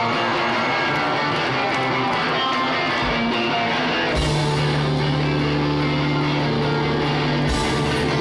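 Live rock band playing loud amplified electric guitars. About halfway through, a low note comes in and is held for about three seconds, then cuts off suddenly.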